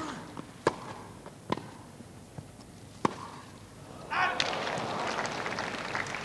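Tennis rally: a tennis ball struck by rackets four times with sharp cracks, the first being the serve and the gaps lengthening. From about four seconds in, the crowd applauds as the point ends.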